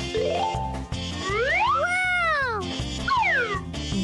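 Upbeat background music with a steady beat. A quick rising run of tones near the start is followed by a long cartoon-style sound effect whose pitch rises and then falls again.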